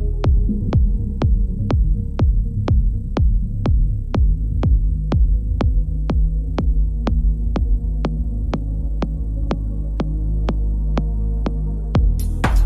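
Progressive house music in a stripped-down section: a steady kick drum on every beat, about two a second, over a sustained deep bass drone, with little in the high range.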